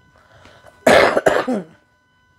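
A woman coughs about a second in: a harsh cough that breaks into a couple of smaller pulses and trails off falling in pitch.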